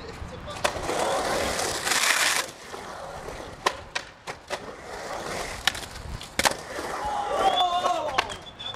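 Skateboard urethane wheels rolling on the concrete of a skatepark bowl, with a harsh scrape lasting about half a second around two seconds in and a series of sharp clacks of the board and trucks. Voices call out near the end.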